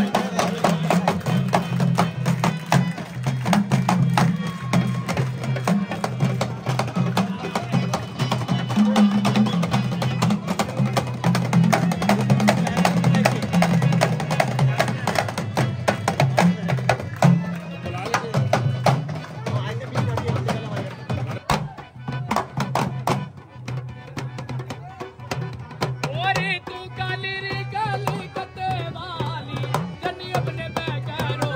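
Live Indian devotional music: a dholak beaten in a fast, dense rhythm over harmonium, with small hand drums. The playing thins out for a few seconds past the middle, and a voice begins singing near the end.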